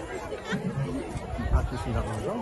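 Crowd chatter: many people talking at once in a large gathering, with several voices overlapping.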